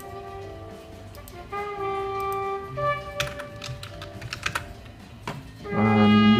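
A recorded song with long held notes playing from a small wired speaker, fed by the TLV320AIC33 codec from music streamed over Bluetooth. A few computer keyboard clicks sound over it in the second half.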